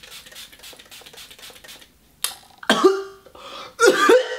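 A pump spray bottle misting a face with a quick series of soft sprays for about two seconds. A person then coughs a few times in the second half, much louder than the spray.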